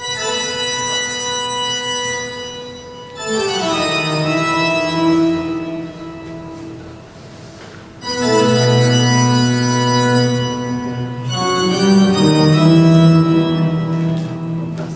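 Recorded organ music, a Baroque piece dated to 1703: long held chords broken by quick falling runs. It drops quieter about six seconds in, then comes back with loud, low held chords about eight seconds in.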